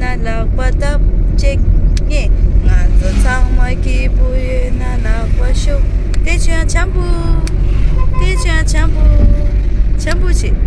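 Low, steady rumble of a moving road vehicle heard from inside the cabin, with people's voices talking over it.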